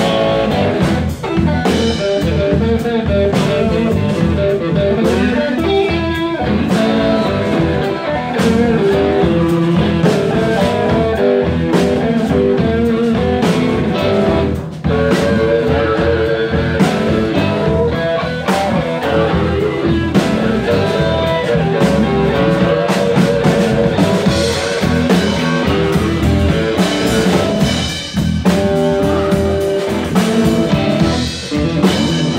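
Live blues band playing an instrumental stretch without vocals: electric guitars over bass guitar and a drum kit, with a brief drop in level about halfway through.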